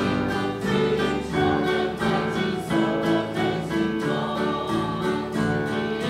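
A church congregation and choir singing a lively worship song together, with instrumental accompaniment keeping a steady beat.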